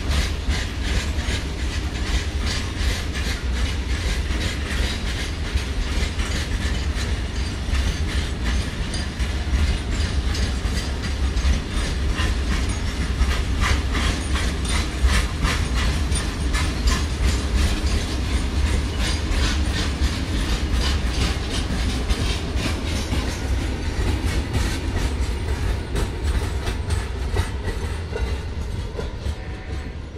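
Loaded BOXN open coal wagons of a freight train rolling past, their wheels clattering steadily over the rail joints with a deep rumble. The sound eases slightly near the end as the last wagons go by.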